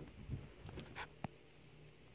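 A cat's paws scrambling on carpet while it chases a toy: faint soft thumps, then a few light, scratchy clicks.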